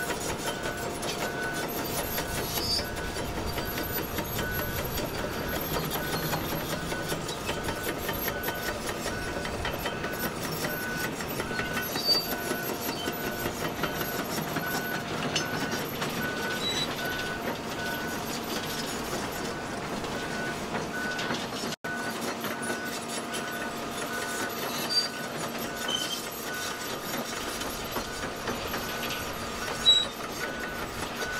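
Diesel earthmoving machinery, an excavator and dump trucks, running steadily, with a back-up alarm beeping at an even pace throughout and a few faint knocks.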